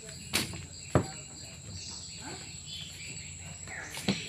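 Steady high-pitched insect drone in a mangrove forest, with two sharp knocks in the first second.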